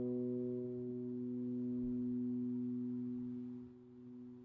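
A single low B note of a sampled pedal steel guitar, autosampled from a VST plugin and played back from an Akai MPC Live 2 Retro keygroup program, sustaining smoothly as its brighter overtones die away and leave a pure tone, with a dip in level near the end.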